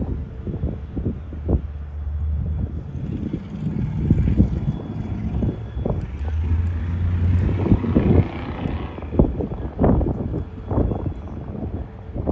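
Low drone of the passing self-unloading lake freighter's diesel engine and machinery, swelling twice and strongest as its stern superstructure goes by about six to nine seconds in, with gusty wind buffeting the microphone throughout.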